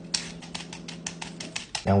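Vegetable peeler scraping the skin off raw sweet potatoes in quick, even strokes, about six or seven a second.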